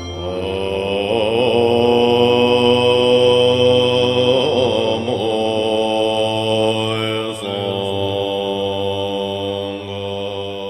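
A sung Buddhist mantra chant as background music: a voice holding long, drawn-out notes, the pitch wavering now and then, over a steady drone.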